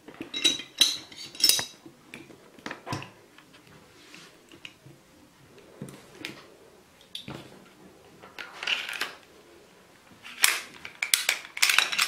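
Hand reassembly of a field-stripped Glock 17C pistol. The barrel and recoil spring assembly are fitted into the slide, then the slide is run back onto the frame. This gives scattered sharp metallic clicks and scrapes, busiest near the end.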